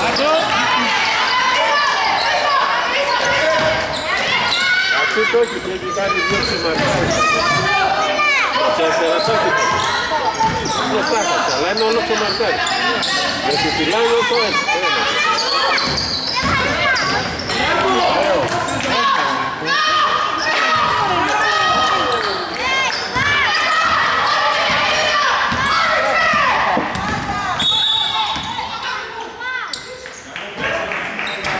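Live basketball game sound in a gym: the ball bouncing on the hardwood floor, sneakers squeaking and players and coaches calling out, with a short high whistle blast near the end.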